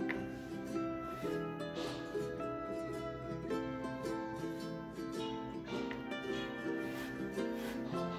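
Instrumental background music: plucked-string notes in a gentle, flowing, repeating melody.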